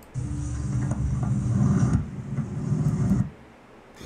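Model railway train running along its track, a low rumble with a thin high whine over it. It lasts about three seconds and cuts off suddenly.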